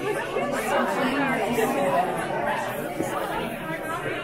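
Chatter of several visitors' voices, people talking over one another with no single clear speaker.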